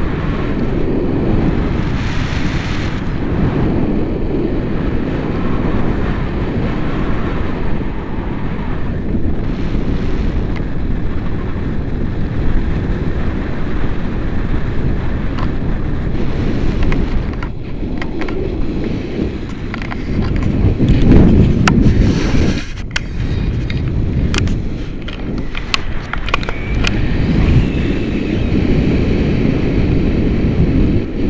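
Wind buffeting the microphone of a camera carried on a paraglider in flight: a loud, steady low rumble that swells and dips. A few sharp clicks come in the second half.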